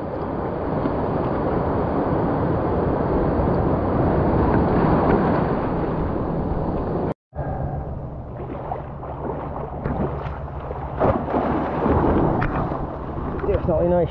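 Surf washing and surging over mussel-covered rocks as a steady rush of water. It cuts out abruptly about seven seconds in, then comes back quieter with scattered small splashes and knocks.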